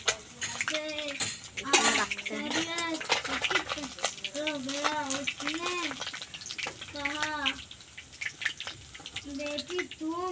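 A metal spatula scrapes and taps against an iron kadhai as pieces of fish frying in oil are lifted out, with sharp clinks from time to time. Over it, short rising-and-falling vocal calls repeat throughout.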